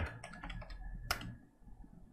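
A quick run of small key clicks as a sum is keyed in, with one sharper click about a second in, then only a few faint ticks.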